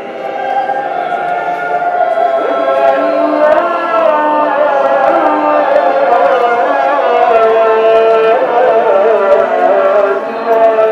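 Music of voices singing long, wavering notes that grow louder over the first few seconds and then stay full.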